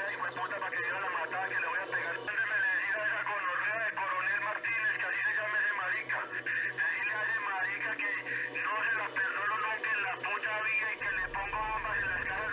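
A man speaking Spanish on an old tape recording, thin and tinny, with a steady low hum underneath.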